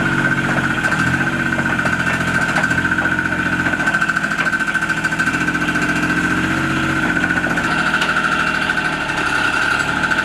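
Engine of a John Deere Gator six-wheel utility vehicle running as it is driven slowly up a ramp, its pitch shifting a few times with the throttle. A steady high whine runs over it throughout.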